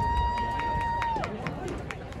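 A single long, high whistle that swoops up, holds one steady pitch for about a second and a half, and drops away, over a crowd's background chatter. A few sharp clicks follow near the end.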